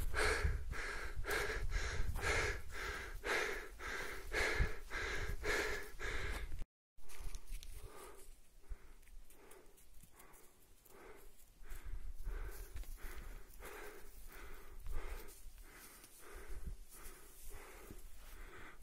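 Rapid, even panting breaths close to the microphone, about two a second. There is a brief cut about six and a half seconds in, after which the breathing goes on softer.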